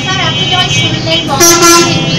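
A vehicle horn honks once, loud and steady for about half a second, about a second and a half in, over a voice and a background of other held horn-like tones.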